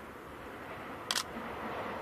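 Distant running noise of a diesel limited-express train approaching, growing slowly louder, with one short, sharp click about a second in.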